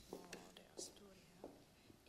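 Faint whispered speech: one woman quietly relaying a question to the woman beside her, far from the microphone, with soft hissing sibilants.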